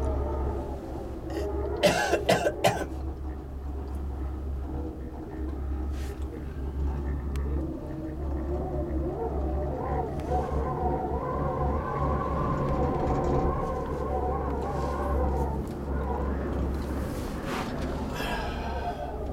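A person coughing, several sharp coughs close together about two seconds in, over a steady low rumble inside a cable-car cabin.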